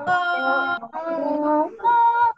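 A woman's voice singing a children's song with every vowel sung as 'o', in three held, steady-pitched phrases.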